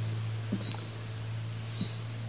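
Quiet outdoor ambience in a pause between words: a steady low hum, with a short high chirp repeating about once a second.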